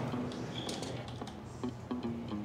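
A few light clicks over soft background music with low held notes.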